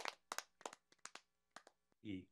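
Tail of a clapping sound effect: sharp claps, several a second at first, growing fainter and sparser and dying out shortly before the end.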